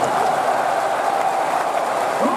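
Large stadium crowd applauding, a steady wash of clapping.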